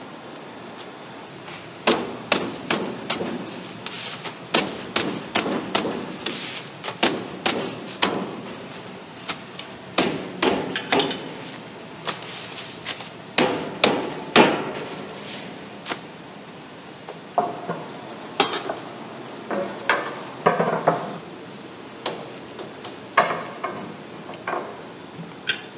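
Irregular knocks and clatter of kitchen work, like a knife or cleaver striking a cutting board over and over. The strikes start about two seconds in, pause briefly in the middle, and resume with a few brief metallic rings.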